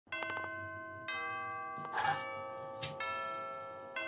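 Background music of chiming bell tones: a few ringing notes struck one after another, each left to fade, with a brief jingle about halfway through.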